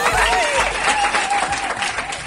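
Audience applauding as a live song ends, dense clapping with voices rising over it.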